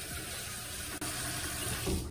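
Bathroom sink tap running steadily while a face is rinsed of lathered cleanser, with a short break in the flow about a second in.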